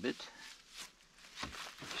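Soft rustling of a fabric bundle being handled in the back of a van, with a few light knocks.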